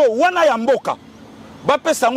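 A man speaking emphatically in short bursts, with a brief pause in the middle.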